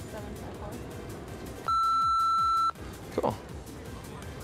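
A single steady censor bleep lasting about a second, starting nearly two seconds in, masking the phone number being spoken.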